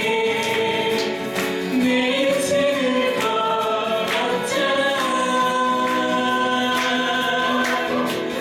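A woman and a man singing a duet, with strummed acoustic guitars: held vocal notes over a steady strum.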